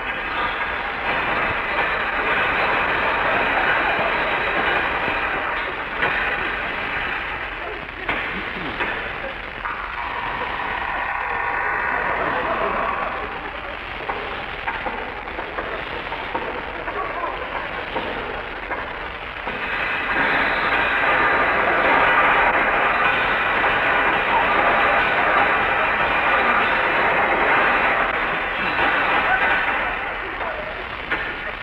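Old-time radio sound-effects sequence of a heavy vault being opened, with clanking, locks and alarm bells and sirens, under long studio audience laughter that swells in the last third.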